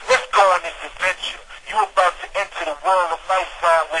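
A person's voice speaking, with no music behind it.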